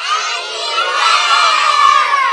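A group of young children shouting all at once, many high voices overlapping. It starts suddenly and grows louder toward the end, with one voice holding a long call.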